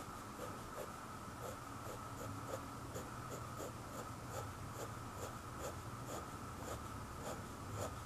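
Fine needle-tip pen scratching short hatching strokes on sketchbook paper, a soft regular scratch about two or three times a second.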